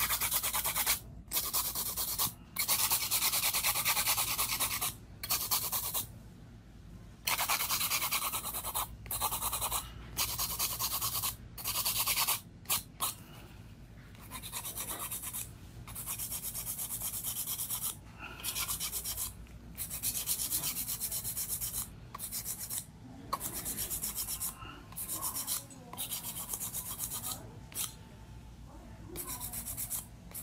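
A hand nail file scraping back and forth across long artificial nails, in a series of rasping strokes with short pauses between them. The strokes are louder and longer in the first half, then lighter and shorter later on.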